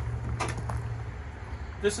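Fold-out metal hose guide on a van-mounted hose reel being swung shut, giving two sharp clicks about half a second in, over a steady low hum.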